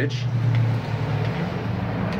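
A steady low motor hum, with no other distinct sound over it.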